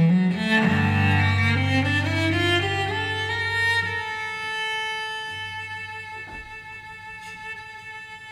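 Solo cello with piano accompaniment playing an instrumental passage: a rising run of notes over a held low note, then sustained higher notes that fade away softly.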